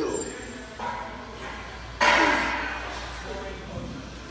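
A man grunting with effort through the reps of a heavy one-arm dumbbell row: short grunts that fall in pitch, about one every second or so, the loudest a sharp one about two seconds in.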